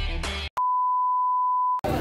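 Intro music ends about half a second in, then a steady electronic beep of one pitch holds for just over a second and cuts off suddenly. Crowd noise starts right after it, near the end.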